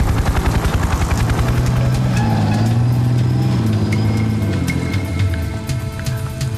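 An engine running, its pitch rising and then falling between about two and four seconds in, over background music with held notes.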